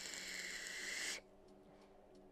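Hiss of air drawn through a Smok TFV18 sub-ohm tank on the Arcfox box mod while the coil fires, a steady high-pitched rush that stops suddenly about a second in.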